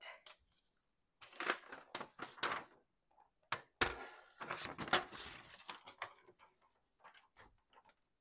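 A sheet of paper rustling as it is handled and laid on a paper trimmer, with scattered light clicks and one sharp knock a little before the middle.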